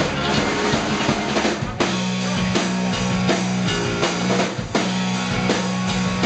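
Live rock band playing loud: electric guitars, bass guitar and a drum kit, with bass drum and snare hits. A steady low bass note holds from about two seconds in.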